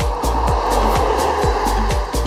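Background music with a steady drum beat, over which a pickup truck passes on the asphalt road: a rushing tyre noise that swells and fades through the middle.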